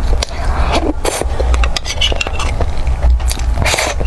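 Close-miked eating from a small metal tin with a metal spoon: mouth sounds of a bite, then the spoon scraping and clicking against the inside of the tin, loudest about a second in and again near the end. A steady low hum runs underneath.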